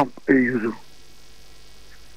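A brief spoken sound, then a steady low electrical mains hum on the recording through the pause.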